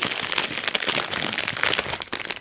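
Aluminium foil wrapper of a chocolate bar crinkling and crackling as hands peel it open, a continuous run of rapid crackles.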